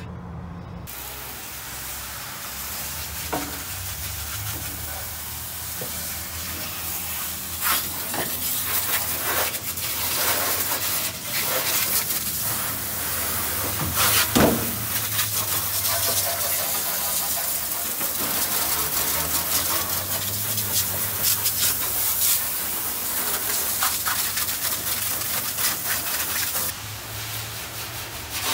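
Water spray from a hose wand hissing as it washes down the bare, rusty sheet-steel floor of a 1973 Ford F-250 crew cab cab, with irregular spatters as the jet hits the metal. It starts about a second in and drops away shortly before the end.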